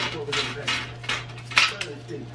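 Plastic packaging rustling in repeated short bursts as it is pulled off a metal-framed glass TV stand panel, with the loudest rustle a little past halfway.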